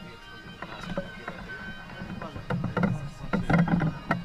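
Men carrying a processional statue on wooden poles: short voice bursts from the bearers and knocks from the poles and feet, coming thicker in the second half, over faint steady music.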